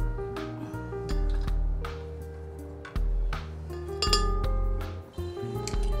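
Background music, with a few clinks of a utensil against a frying pan and glass blender jar as cooked vegetables are scraped into the jar; the sharpest, ringing clink comes about four seconds in.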